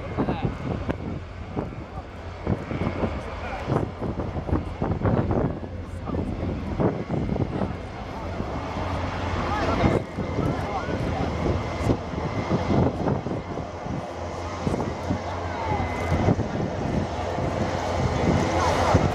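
Airbus A380's four turbofan engines heard from the ground as the airliner banks and flies past, a steady jet rumble with a thin whine, mixed with nearby voices.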